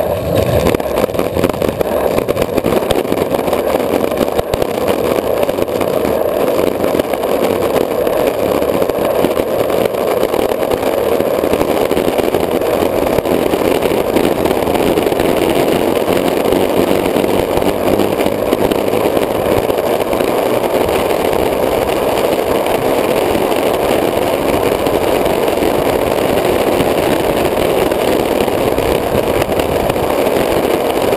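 Longboard wheels rolling fast down an asphalt street, heard close up from a camera mounted on the board: a loud, steady rushing noise that holds without a break.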